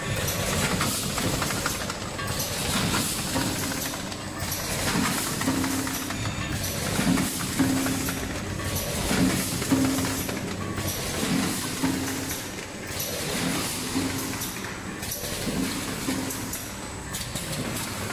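Stand-up pouch packing machine running: a steady mechanical clatter that repeats in a regular cycle, with a short low tone about once a second and a brief burst of higher noise about every two seconds.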